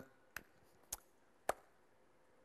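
Three short, sharp clicks on a laptop, about half a second apart, with near silence between them.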